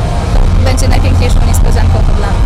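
A woman's voice over a loud, steady low-pitched rumble, with her words coming in about half a second in.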